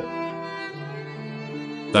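Slow background music on bowed strings: a violin line held over long, sustained low notes that change partway through.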